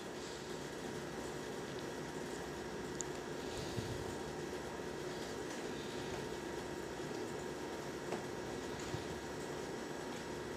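Steady background hiss with a faint hum, and a few faint light ticks.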